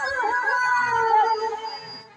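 A woman singing into a microphone with live accompaniment, drawing out one long, wavering note that slides down and fades away near the end.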